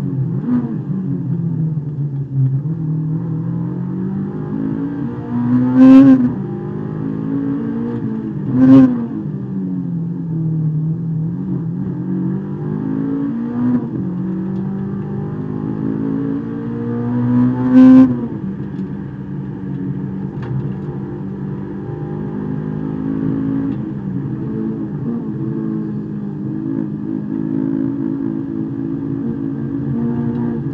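Honda S2000's four-cylinder engine heard from inside the cabin, running at low revs that rise and fall gently at low road speed. It gives three short, loud rev blips about six, nine and eighteen seconds in.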